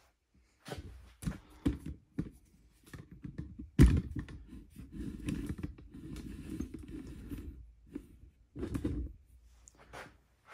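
Knocks and clunks of a steel connecting rod being handled on a wooden workbench around a digital scale, with one loud thunk about four seconds in followed by a few seconds of scraping, shuffling handling noise.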